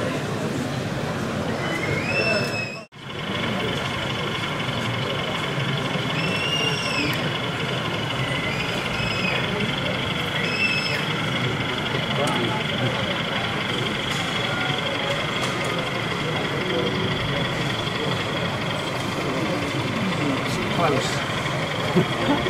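Indistinct crowd chatter, many people talking at once, with a sudden brief dropout about three seconds in.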